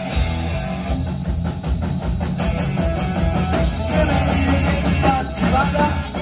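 Live rock band playing a fast, loud song: distorted electric guitars over a driving drum beat, with keyboard.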